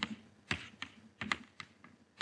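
Chalk tapping on a blackboard while writing: a handful of short, sharp clicks at irregular intervals as the letters are struck out.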